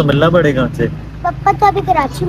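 A young girl speaking, over a steady low background hum.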